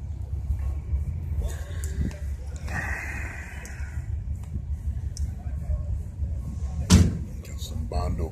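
A steady low rumble of wind on the microphone, with one sharp slam about seven seconds in, the loudest sound here.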